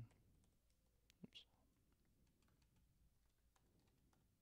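Near silence with faint, scattered computer keyboard keystrokes as code is typed.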